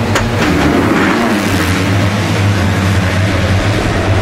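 A full gate of 250cc motocross bikes launching off the start together at full throttle, their engines merging into one loud, steady din.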